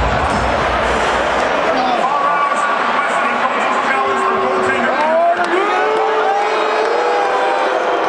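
Hockey arena crowd reacting to a goal: a steady din of thousands of voices. From about two seconds in, long rising and held shouts and calls stand out above it.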